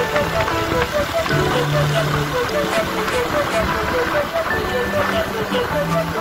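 Background music: a quick, evenly repeating melodic figure over held bass notes that change about once a second, with a steady noisy wash underneath.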